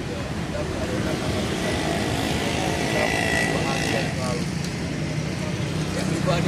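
Steady road-traffic noise with a motor vehicle passing by, louder in the middle, under faint voices of people nearby.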